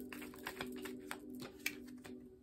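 Tarot cards being shuffled by hand: a run of quick, irregular card clicks and taps, over a faint steady background music drone.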